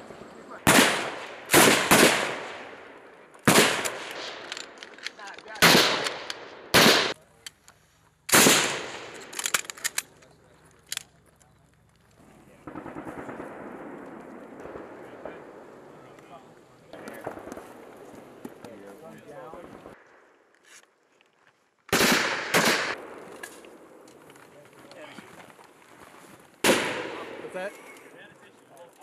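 Belt-fed machine guns firing short bursts on a firing range, with several bursts in the first ten seconds and more near the end. In between there is a stretch of steadier, quieter noise.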